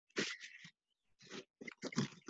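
A person's short, strained grunts and breaths while pulling down into a full split: one just after the start, then several quick ones in the second half.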